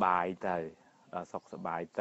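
Speech only: a Buddhist monk's voice preaching a sermon in Khmer, in short phrases with brief pauses.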